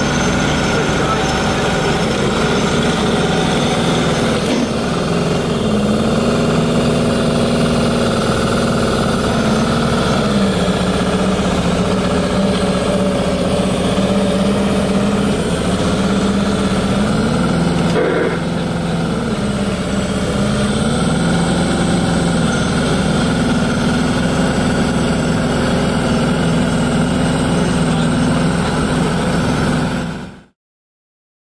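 Miniature hand-built V12 engine in a scale model tank running steadily, its speed rising and falling several times, with a single sharp click about eighteen seconds in.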